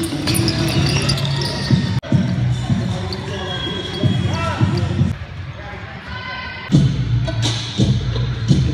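Many basketballs being dribbled on a hardwood gym floor, bounces overlapping irregularly, with voices in the large hall. The bouncing thins out for a moment a little past the middle.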